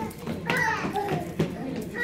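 Young children's high-pitched voices calling out, with a few footfalls slapping on a hard floor as toddlers run.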